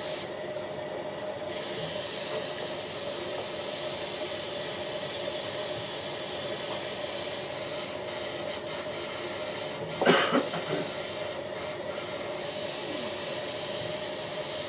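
Dental suction running with a steady hiss and faint hum, and a single cough about ten seconds in.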